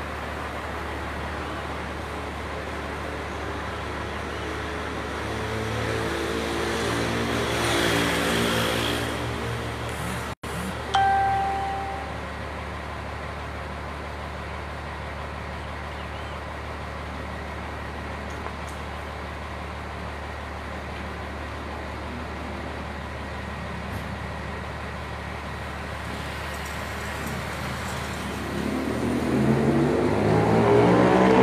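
Street traffic with a steady low hum: a motor vehicle's engine rises and passes about a third of the way in, a brief single tone sounds just after, and another vehicle's engine rises near the end.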